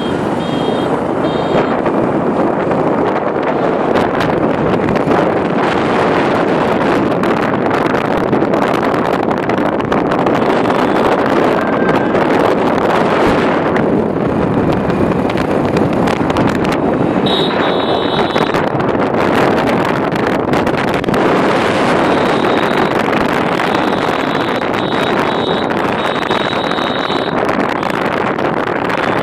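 Motorcycle riding along a road, its engine and tyre noise buried in a steady loud rush of wind buffeting the phone's microphone. A thin high beeping tone comes and goes briefly near the start and several times in the second half.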